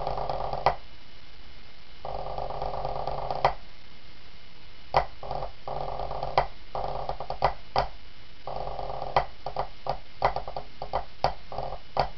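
Pipe band snare drum: a long roll ending in an accented stroke, then a second long roll and stroke (the roll-in). About five seconds in, the drummer starts the score, with sharp accented strokes among shorter rolls.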